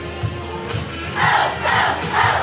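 A group of children shouts twice in unison in the second half, over music with a steady beat.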